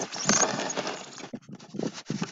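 Camera handling noise as the camera is picked up and repositioned close to the microphone: a dense rustling scrape that breaks up after about a second into scattered clicks and crackles.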